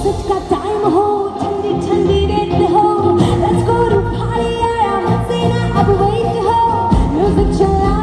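A woman singing over a live band with drums and bass guitar, a continuous loud ornamented melody through the stage sound system.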